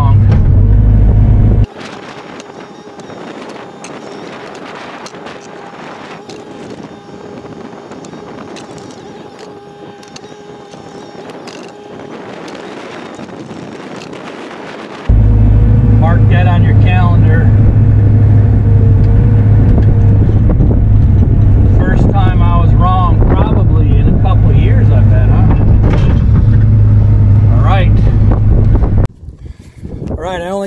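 Bobcat E42 mini excavator's diesel engine running, heard from inside the cab as a loud steady low drone. It drops away a couple of seconds in and comes back loud about halfway through, running until just before the end.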